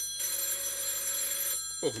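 Telephone bell ringing: one ring of about a second and a half that stops shortly before the end, after which the call is answered.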